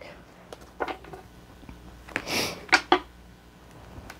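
Quiet handling of a tarot deck on a wooden table as it is picked up for shuffling: a few light taps and clicks, with one brief rustle about two seconds in.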